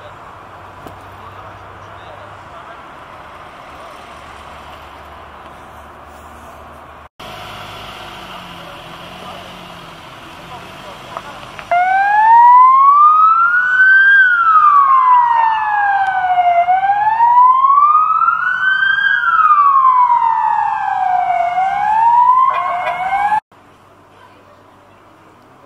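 Ambulance siren wailing in slow rising and falling sweeps, each taking about five seconds. It starts about halfway through and is loud from then on. Before it there is only a low background of voices and street noise.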